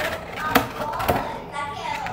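Cardboard cake box being opened by hand: the flaps rustle and scrape, with two sharp taps about half a second and a second in.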